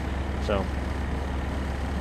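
Steady low drone of an idling truck engine, heard from inside the cab.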